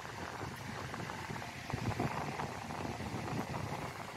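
Faint handling of a steel cotter pin being pushed through the pivot pin of a car jack's pump-handle linkage: light metal clicks, a few of them around the middle, over a steady background hiss.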